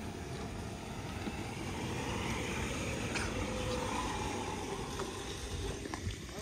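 An electric cart on a paved road: a steady low rumble of tyres, with wind noise, swelling a little in the middle as it comes near.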